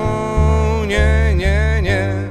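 Live music from a small band: a male voice sings a gliding melody over upright double bass notes that change about every half second, with keyboard accompaniment.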